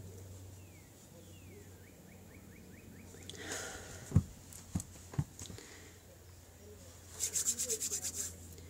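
Hands and shirt sleeves rubbing and brushing as someone signs, with three sharp hand taps about four to five seconds in and a quick run of light rubbing strokes near the end, over a steady low hum.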